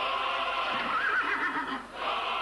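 Horses whinnying, with a quavering high call about halfway through; the sound dips briefly near the end.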